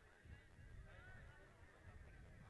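Near silence: faint outdoor background with a few faint, short arching tones.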